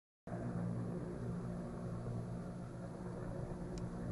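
Helicopter flying overhead at a distance: a steady low rumble of engine and rotor.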